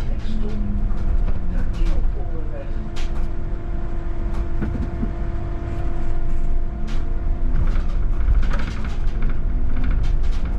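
VDL Citea electric city bus driving, heard from inside: a steady low road rumble with a steady electric hum from about two and a half to seven seconds in, and light rattles and clicks.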